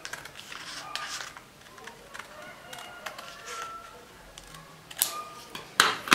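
Scissors cutting through a sheet of paper in a run of short snips, with paper rustling. Louder crackles of paper come about five seconds in and again just before the end as the cut pieces are separated and lifted.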